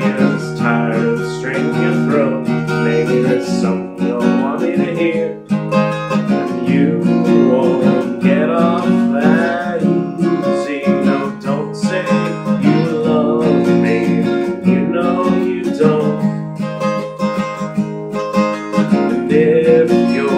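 Acoustic guitar strummed steadily, chords ringing continuously through an instrumental stretch of a song.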